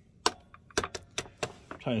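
A hand crimping tool being handled and set down on a wooden workbench: a quick, uneven run of about eight light clicks and knocks in under two seconds.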